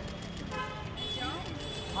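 Background voices of people talking over steady street noise, with a thin, steady high-pitched tone.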